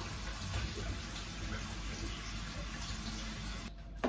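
Kitchen tap running in a steady stream, shut off suddenly shortly before the end.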